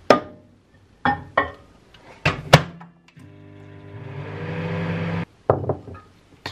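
A ceramic bowl and a microwave oven door clunking as the bowl goes in and the door shuts. About three seconds in, the microwave runs with a steady hum that grows louder, then cuts off sharply after about two seconds. More clunks follow as the door is opened.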